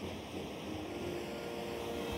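Faint low hum and hiss with a weak steady tone running through it: a quiet lull with no speech or music.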